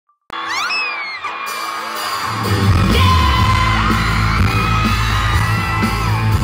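Crowd screaming with high rising cries as the sound cuts in, then a live rock band's intro through the PA comes in about two seconds in, loud and bass-heavy.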